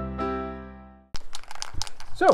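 Soft piano background music fading out over the first second. After a brief gap comes a quick run of sharp rattling clicks, like an aerosol can of filler primer being shaken.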